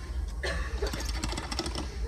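Rapid, irregular clicking and rattling starting about half a second in: a locked wooden shack door being tried and shaken.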